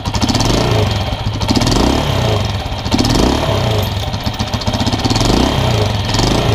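Honda TMX155 single-cylinder pushrod four-stroke engine running and being revved up and back down several times. No valve-train ticking (lagitik) is heard after the new rocker arm and push rod and the valve clearance adjustment.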